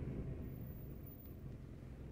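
Faint, steady low rumble of a car in motion, heard from inside the cabin.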